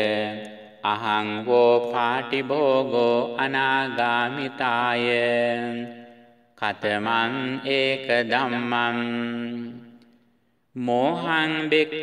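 Chanted recitation of Pali Buddhist scripture, the words drawn out on a steady reciting pitch, with two short breaks about six and ten seconds in.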